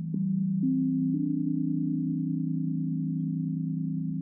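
Background meditation music of sustained low drone tones. A new tone comes in just after the start, steps up in pitch twice within the first second, then holds steady over the drone.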